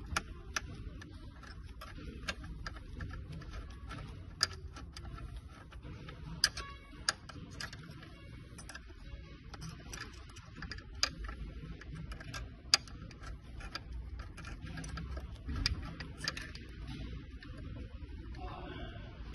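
Allen key turning a bolt up through the plate into a swivel seat base, with irregular light clicks and taps as the key, bolt and plate shift against each other.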